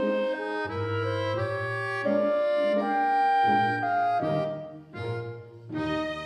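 Instrumental background music: a melody of held notes moving from note to note over a low bass note that comes and goes.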